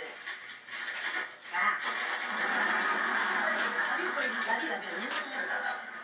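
Audio from a television programme: a voice says "ah", then a steady noisy sound with speech-like texture runs for about four seconds and fades near the end.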